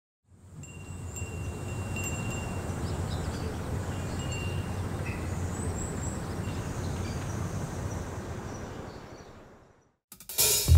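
Soft wind chimes ringing over a steady low ambient rumble. The sound fades in over the first couple of seconds and fades out near the end.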